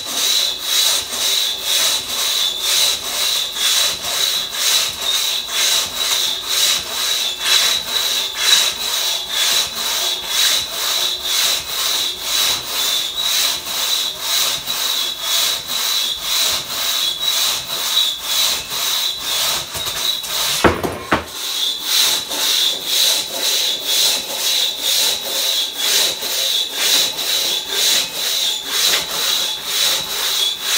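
One-man crosscut saw (single buck) cutting through a large log in fast, even push-pull strokes, with a steady high ringing note over the rasp of the teeth. The rhythm breaks briefly about two-thirds of the way through, then resumes.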